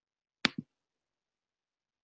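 A short, sharp double click, two clicks about a sixth of a second apart, about half a second in, against otherwise dead silence.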